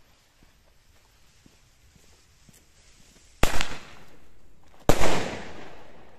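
Ground firework with a fuse hissing faintly after being lit, then going off with two loud bangs about a second and a half apart, each trailing off in a fading hiss.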